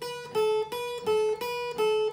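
Music: a guitar picking a short two-note figure, going back and forth between a higher and a lower note about three times a second.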